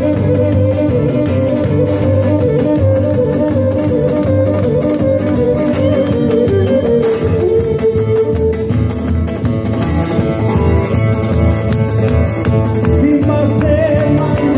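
Live Cretan folk music: a Cretan lyra bowing a continuous melody over strummed laouto and guitar accompaniment, with a steady pulsing beat in the bass.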